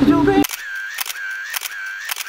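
The music cuts off about half a second in, giving way to a thin video-editing transition sound effect with the bass cut away: a short repeating tone about every half second, with sharp camera-shutter-like clicks.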